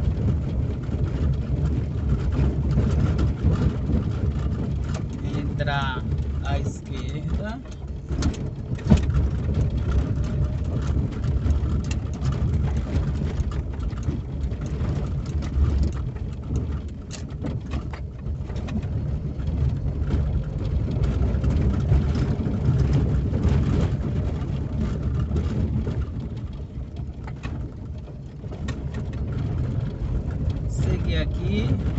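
Car driving on town streets, heard from inside the cabin: a steady low rumble of engine and tyres, dipping slightly in level a few times.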